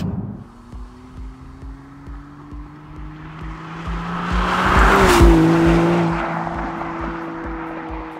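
Maserati MC20 with its twin-turbo V6 driving past at speed: engine and tyre noise build to a peak about five seconds in, the engine note drops in pitch as it goes by, then fades. A music track with a steady beat plays underneath.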